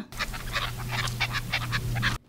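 A flock of red-legged partridges calling: a rapid, chattering string of short, sharp notes, about eight a second, over a steady low hum.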